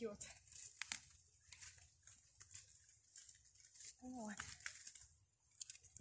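Faint, scattered crackles and rustles of dry fallen leaves in the forest leaf litter, quiet enough to be near silence.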